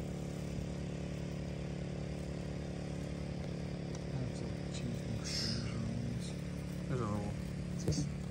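Small engine of a portable generator running at a steady speed as a constant hum, with faint voices in the background.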